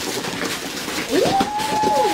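Wrapping paper tearing and crinkling as presents are ripped open. About a second in, a voice rises into one long held 'ooh'-like note over the rustle.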